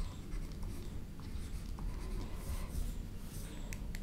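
Stylus scratching and tapping on a pen tablet as handwriting is written, with a few sharp clicks near the end, over a steady low hum.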